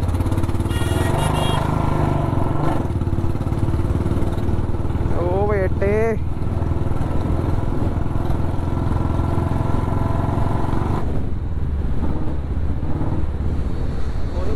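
Royal Enfield Bullet Standard 350's single-cylinder engine running steadily while the motorcycle is ridden along a street, its sound softening a little about eleven seconds in.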